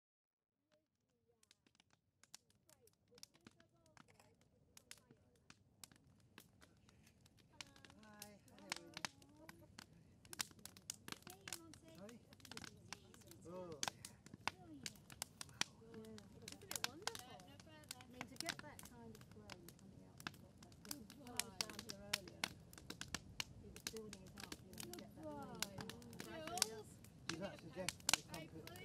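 Faint voices of several people talking, fading in over the first couple of seconds. Many sharp, scattered crackles and clicks sound throughout and grow more frequent.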